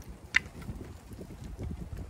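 Bicycle on 32c road tyres rolling over a cracked concrete sidewalk: an uneven low rumble and bumping, with wind buffeting the microphone. One sharp click about a third of a second in.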